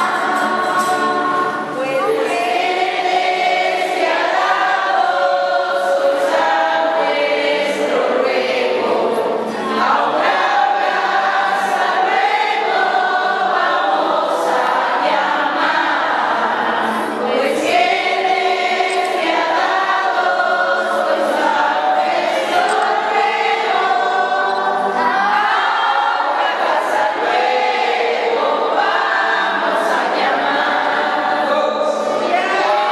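Mixed group of children and adults singing a Spanish-language posada song together, many voices in unison holding long sung notes.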